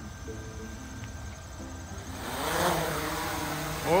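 Autel Evo II Pro quadcopter taking off: the motors and propellers whine steadily, then about two seconds in rise in pitch and get louder as it lifts off the pad, with a rush of prop wash.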